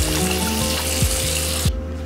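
Background music with a steady beat, over the hiss of water running from a tap, which cuts off near the end.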